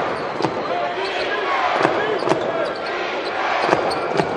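A basketball bounced a handful of times on a hardwood court, uneven single dribbles rather than a steady rhythm. Sneakers squeak in short rising-and-falling chirps over a steady arena crowd murmur.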